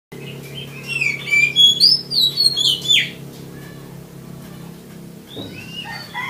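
Oriental magpie-robin (kacer) singing a quick run of varied clear whistles and down-slurred notes for about three seconds. It pauses, then starts singing again near the end, over a steady low hum.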